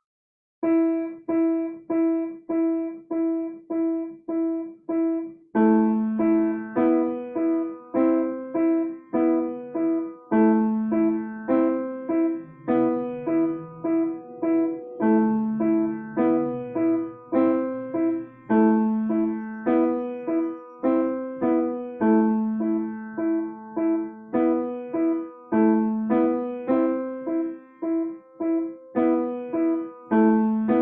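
Grand piano playing a slow beginner piece. A single E is struck over and over, about twice a second, in the right hand. After about five seconds a slow left-hand melody on A, B and C joins underneath it.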